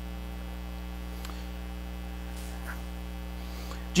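Steady electrical mains hum with a stack of low pitched overtones, plus a faint tick or two.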